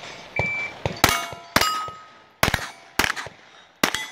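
A shot timer beeps once, then a pistol fires five shots, about half a second to under a second apart, at steel targets. Hit plates ring on after the shots.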